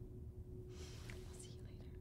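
Faint whispering starts about a second in, breathy and hissy, over a steady faint hum.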